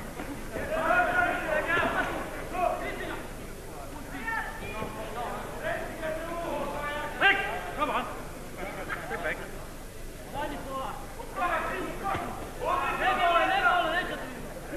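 Men's voices calling out and talking in irregular spurts over background crowd noise in a boxing hall.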